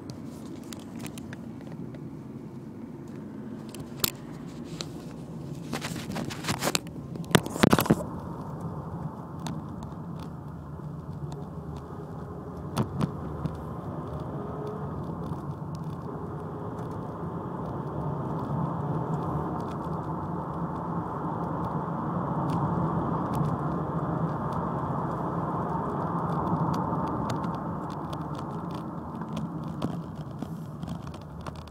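Ford Mondeo Mk3 heard from inside the cabin while driving: steady engine and road noise that builds gradually in the second half. Several sharp clicks and scrapes of the phone being handled come in the first few seconds.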